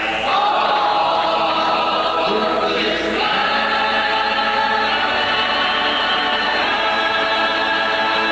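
Mixed men's and women's folk group singing together in harmony. The voices move through a line, then hold one long chord from about three seconds in.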